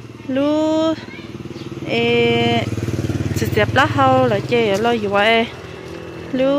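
People talking in high voices over a small motorcycle engine running steadily; the engine hum fades near the end.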